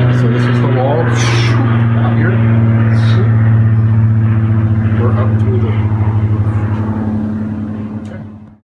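A loud, steady mechanical drone: a low motor hum with its overtones, unchanging in pitch, with a few brief clicks or rustles over it.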